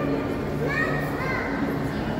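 Indistinct voices echoing in a large indoor hall, with a high voice rising and falling about a second in.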